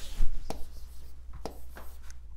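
Stylus tapping and sliding on the glass of a large touchscreen board while writing a sigma sign, with two sharp taps.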